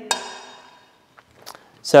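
A single light clink of metal tongs against a glass bowl, ringing out and fading over about a second as a piece of lithium is dropped into water. A couple of faint ticks follow.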